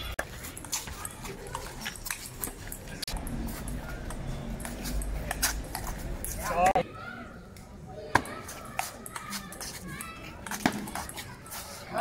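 Table tennis ball clicking back and forth off paddles and a concrete table during a rally, over voices of people around. A loud short call rising in pitch comes about six and a half seconds in.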